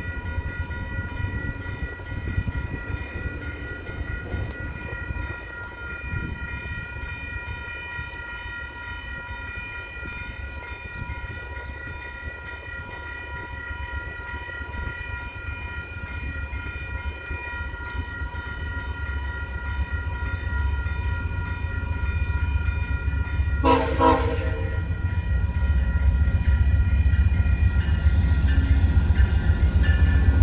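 Level-crossing warning bells ringing steadily as a GE P42DC diesel locomotive approaches, its low rumble growing louder. The locomotive gives one short horn blast about three-quarters of the way through.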